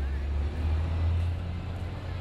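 A motor vehicle's steady low engine rumble over city street noise.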